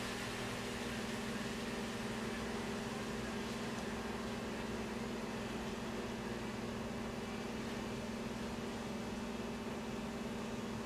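Steady room noise: a low, even hum with a constant hiss, like a fan or appliance running.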